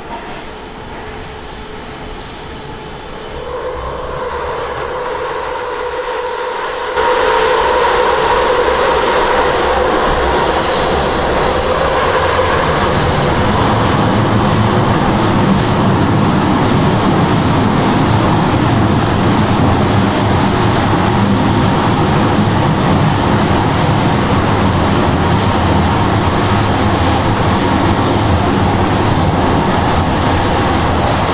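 Moscow metro train running between stations, heard from inside the car. A whining tone rises slightly over the first dozen seconds and fades. The overall noise jumps up suddenly about seven seconds in, and a loud, steady rumble of wheels on rails then carries on to the end.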